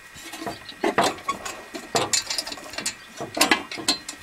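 Hands handling the metal drum and lid of a chainsaw-driven ore sample mill with the saw not running: irregular clicks, scrapes and a few sharp clanks, two about a second in, one at two seconds and two more past three seconds.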